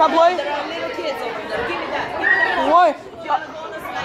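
Chatter of several voices in a large indoor space, with a brief high-pitched sound a little past the middle.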